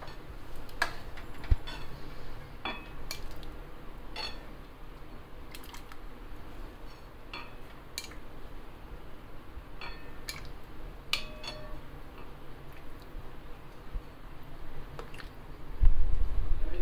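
A steel ladle clinking and knocking against a metal kadai and a glass serving bowl as dal is ladled out, in scattered separate strikes about once a second.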